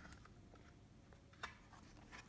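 Near silence: room tone, with one faint click near the end as a thick board-book page is turned.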